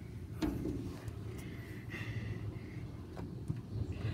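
Strong dust-storm wind heard as a low, steady rumble, with a few faint clicks.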